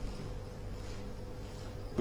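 A faint, steady low hum with a thin steady tone above it, with no other events.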